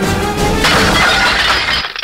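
A glass chandelier crashing down and shattering, starting a little over half a second in and lasting about a second, over dramatic background music.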